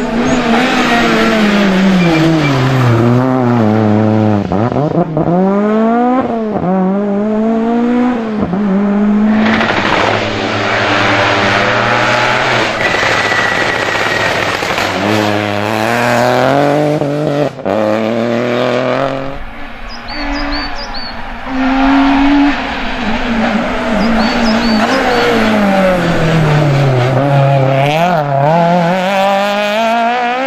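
Rally cars driven hard past the roadside one after another, engines revving high: the revs fall as each car brakes for a bend, then climb again in quick steps through the gears as it accelerates away.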